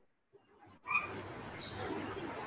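Near silence, then about a second in a steady hiss of room noise cuts in abruptly through a video-call microphone, with a few faint short sounds in it.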